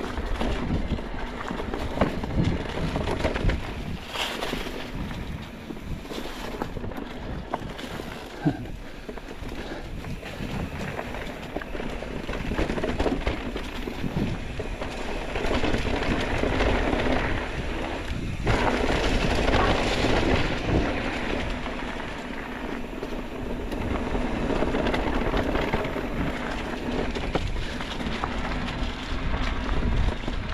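Orbea Wild FS electric mountain bike ridden fast over leaf-covered singletrack: tyres rolling through dry fallen leaves, with wind on the microphone and scattered knocks and rattles from the bike over bumps.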